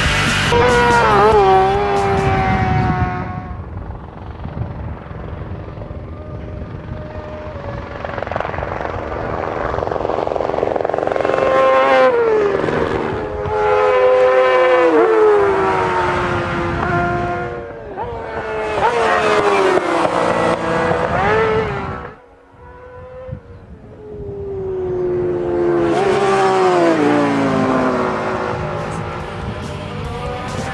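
Racing motorcycles and sidecar outfits passing at high speed: several pass-bys, each engine note dropping in pitch as it goes by, with a brief lull between passes a little after the middle.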